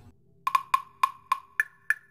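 Knocking on wood, like a wood block: about seven sharp, evenly spaced knocks with a short ringing tone, the last two higher in pitch.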